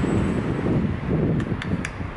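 Low, uneven rumbling noise on the microphone, with three quick light clicks about a second and a half in as small items are handled inside a car.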